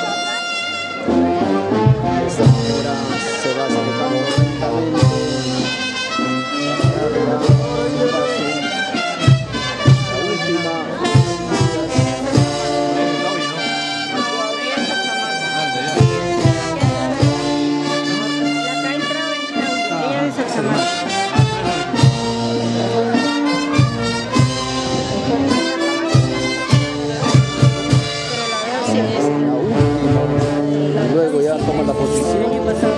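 Brass band playing a tune, with regular drum beats under the horns.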